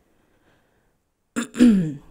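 A woman clears her throat once, about a second and a half in, after a pause of near silence.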